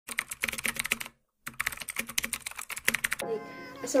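Keyboard-typing sound effect: two runs of rapid clicks with a short silent gap between them. Near the end a steady musical tone comes in.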